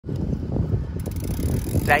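Low, uneven rumble of wind and road noise from riding a bicycle along an asphalt road. A woman's voice starts speaking right at the end.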